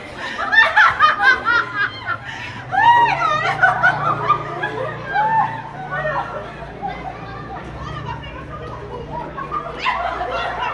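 Women's voices laughing and calling out, with bursts of high-pitched laughter in the first four seconds that settle into quieter chatter.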